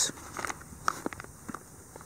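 Soft rustling and a scattering of light clicks from clear plastic lure packages being handled in a tackle bag.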